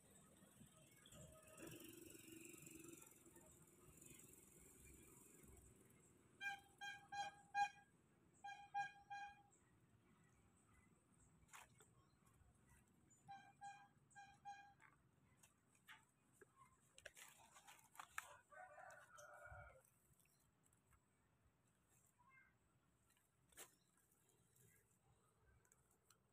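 Mostly near silence, broken by short, quick animal or bird calls in two groups, about six seconds in and again about thirteen seconds in, with a few faint clicks.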